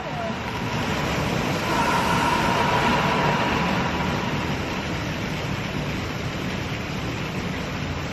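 Man-made geyser erupting: a steady rush of spraying, splashing water, swelling about two seconds in and easing off slightly toward the end.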